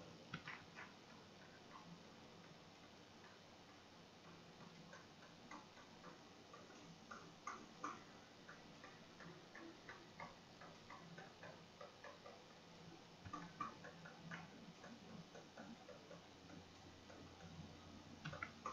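Faint, irregular clicking of a computer mouse as brush strokes are dabbed on, over quiet room tone.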